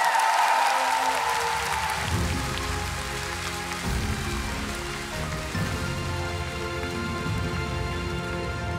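Audience applause in a large arena, fading as instrumental music with a deep bass beat and held chords comes in about two seconds in.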